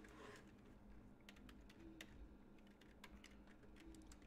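Faint, irregular keystrokes of someone typing on a computer keyboard.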